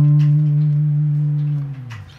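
Electric guitar with a clean tone holding a single low note, the D (re) that tops a short rising run, ringing steadily and dying away near the end.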